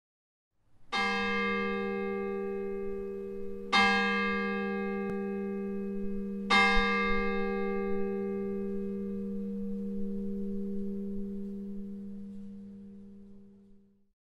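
A bell struck three times, a little under three seconds apart, each stroke ringing on and overlapping the next; the ringing slowly dies away near the end.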